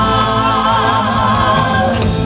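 Live singing through a PA by a man and a woman over steady accompaniment, holding one long note with vibrato that fades near the end as the song closes.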